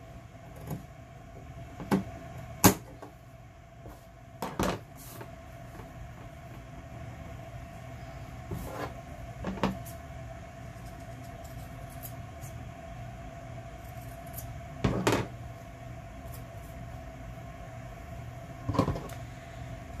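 Scissors snipping fabric and loose threads, with scattered short clicks and knocks of pieces and tools handled on a tabletop, over a faint steady hum.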